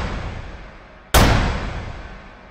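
Cinematic boom-hit sound effects: a sudden deep impact lands about a second in, as the long fading tail of the previous hit dies away.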